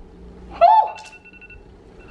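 iPhone timer alarm going off: a thin, steady high electronic tone that stops and comes back near the end. It is quieter than a woman's short exclaimed vocal sound with falling pitch about half a second in, which is the loudest thing.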